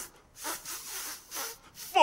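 A man's voice on the recorded song track making a few short breathy, laughing puffs and hesitant breaths. A loud sung note with wide vibrato comes in right at the end.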